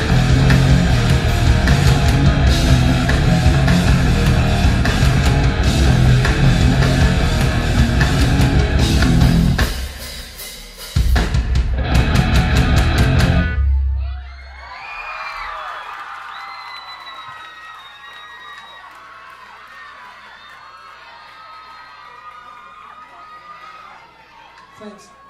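A rock band playing live with distorted electric guitar and drums, loud, with a brief break about ten seconds in, then a last burst before the song ends about fourteen seconds in. The club audience then cheers and whistles.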